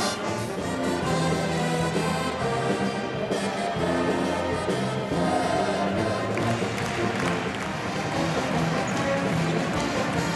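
Pep band playing an upbeat brass tune with drums, held notes over a steady beat.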